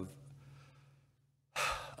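A man's short, audible breath close to the microphone about one and a half seconds in, after a moment of near silence.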